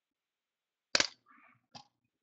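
Dice landing on a table: a sharp clack about a second in, a brief faint rattle, then a lighter click near the end.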